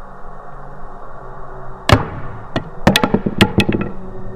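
A wooden wand dropping onto a wooden floor: one hard knock about two seconds in, then a quick run of smaller clattering bounces that come faster and faster as it rattles to rest.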